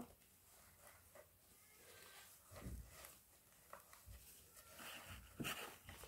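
Near silence with a few faint, soft rubbing and rustling sounds, a little louder near the end: a gloved hand wiping spare plaster powder off a plastic mould with a tissue.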